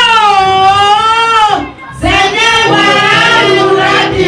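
A woman singing into a microphone: one long held note that bends slightly in pitch, a short break about halfway through, then a second sung phrase.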